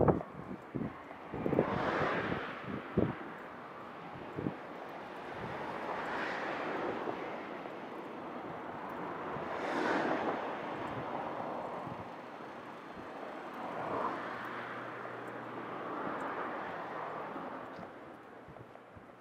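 Cars passing on the road one after another, each a swell of tyre and engine noise that rises and fades, the loudest about ten seconds in. Wind buffets the microphone in the first few seconds.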